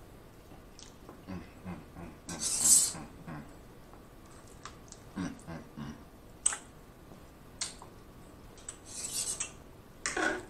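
Close-up eating sounds: mouth chewing of soft food in short runs, with a metal fork and knife scraping and clicking against a clear baking dish. The louder scrapes come about two and a half seconds in and again near the end.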